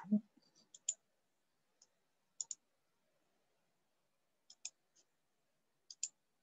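Faint, sharp clicks scattered irregularly over near silence, several coming in quick pairs, with a short low vocal sound right at the start.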